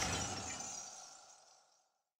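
Fading tail of a glass-shatter sound effect: a bright, glassy ringing that dies away about a second and a half in.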